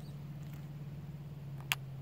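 A single short click as a mini shell is pushed into a pump shotgun's tube magazine, about three-quarters of the way through, over a steady low hum.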